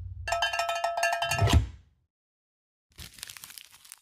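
A short electronic sound-effect jingle: a quick run of ticking percussion over ringing bell-like tones, lasting about a second and a half. It cuts off abruptly into dead silence, and faint hiss comes back near the end.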